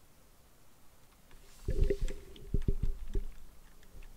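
Near silence, then about halfway through a quick irregular run of soft clicks and knocks lasting about a second and a half: typing on a computer keyboard.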